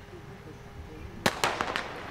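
Starting pistol fired once, a little over a second in, with a short crackle of smaller sharp clicks right after it.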